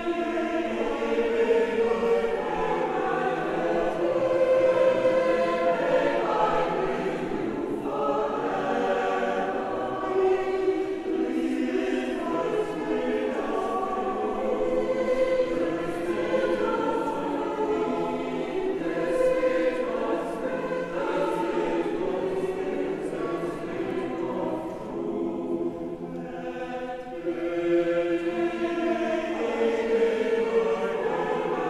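Mixed choir of men's and women's voices singing a sacred choral piece a cappella in sustained chords, softening briefly late on and swelling again near the end.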